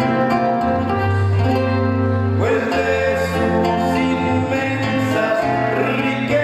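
Live gospel band music: electric and acoustic guitars playing over a steady bass line, with a quick rising glide about two and a half seconds in.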